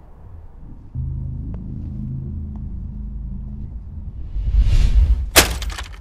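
Low droning music swells, then just past five seconds comes one sharp smash with a short crackle of breaking pieces: a Kia Cerato's plastic taillight lens being struck and broken.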